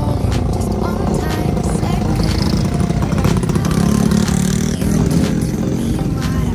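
A motorcycle engine running close by, getting louder around four seconds in, with background music over it.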